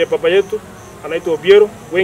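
A man's voice speaking in short, loud phrases with pauses between them.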